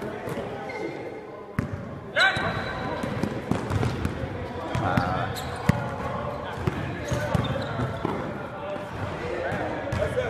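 A basketball bouncing and thudding on a hardwood court during a pickup game, in a series of sharp knocks, under indistinct voices of players. A brief loud rising squeak comes about two seconds in.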